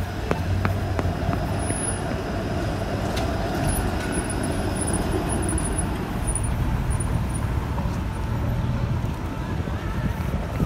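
Steady city street traffic noise at a busy intersection, with vehicles passing, a truck among them close by.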